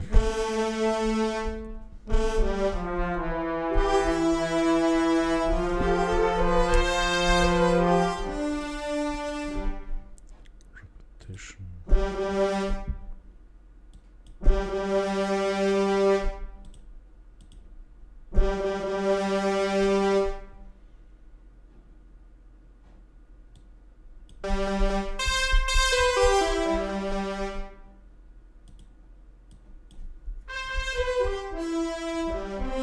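Sampled brass ensemble (Native Instruments Symphony Essentials Brass Ensemble in Kontakt) playing sustained chords. A long phrase with moving inner voices fills the first ten seconds, then come shorter held chords with pauses between them, and a last phrase near the end.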